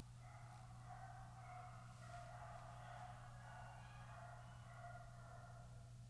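Dogs fighting outdoors, heard faintly from inside as wavering cries over a low steady hum.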